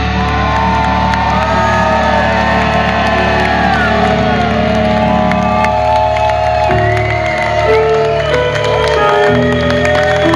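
Live metal band letting long held chords ring out, the notes changing pitch a few times, over a crowd cheering and whooping.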